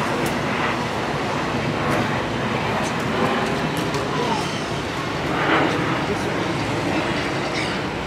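Steady city street noise: a constant rumble of traffic, with faint voices of people nearby.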